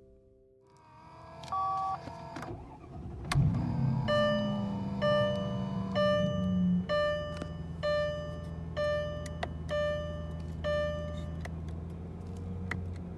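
A 2000 Mercedes-Benz CL500's V8 engine starts about three seconds in and settles into a steady idle. Over the idle, a dashboard warning chime beeps about once a second, eight times. A short two-note chime sounds just before the start.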